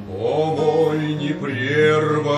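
Song: a male voice sings a long drawn-out, sliding line over a steady low accompaniment, starting just after the beat before it.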